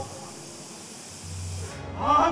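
A steady high hiss with no music or voices, joined by a low hum about a second in.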